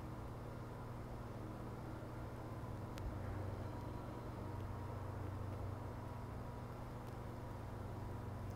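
Quiet room tone: a steady low hum that swells slightly in the middle, with a faint click about three seconds in.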